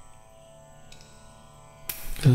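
Soft, steady musical drone of held tones under a pause in devotional chanting, with a brief sharp noise near the end.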